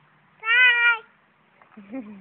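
A toddler's single high-pitched vocal call, about half a second long, a little after the start.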